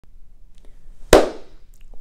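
A single sharp hand clap about halfway through, fading out quickly.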